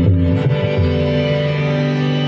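Live Indian instrumental music: a sustained, guitar-like melody over tabla, with the low bass drum gliding in pitch in the first second.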